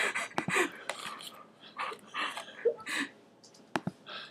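Short, breathy bursts of a person's voice, broken up and muffled, with two sharp clicks near the end.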